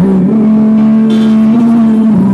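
A song played through a portable speaker, with one long note held steady.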